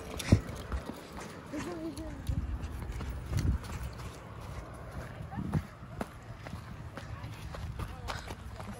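Footsteps of hikers on a hard dirt and rock trail, an uneven series of scuffs and knocks, over a low rumble of wind on the microphone.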